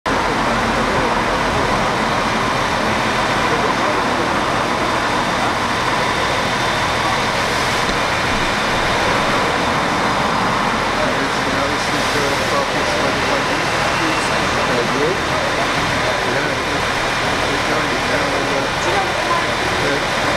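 A vehicle engine idling steadily, with a low pulsing rumble, under the chatter of a crowd.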